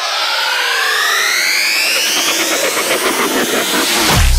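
Synthesized riser sound effect: several tones sweep upward in pitch over a rushing noise that grows steadily louder.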